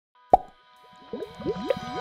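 Cartoon bubbling sound effects for an animated bubbling flask. A sharp pop comes about a third of a second in, then a ringing tone is held under a quick run of rising bubbly blips that starts about a second in.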